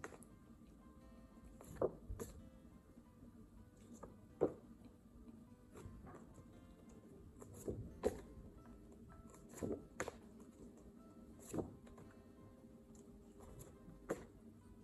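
A woman's voice sounding out single letter sounds in short, sharp bursts every second or two, some in quick pairs, over a faint steady background.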